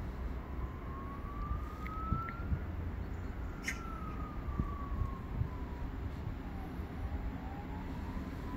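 A distant siren wailing, its pitch rising slowly, falling over several seconds, then rising again near the end, over a steady low rumble.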